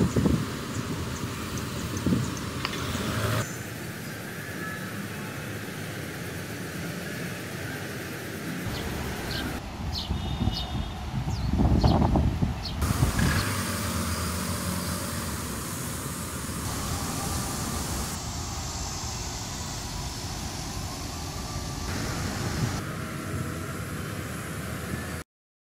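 Outdoor street ambience: a steady hum of road traffic, with louder vehicle passes near the start and about 12 seconds in. The background shifts abruptly several times.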